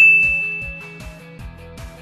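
A bright electronic notification ding, struck just before, rings out and fades over the first second and a half, over background music with a steady beat.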